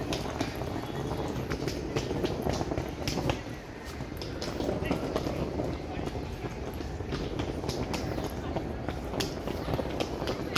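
Footsteps of a person walking on a paved path, a step about twice a second, over a low steady rumble and the murmur of voices.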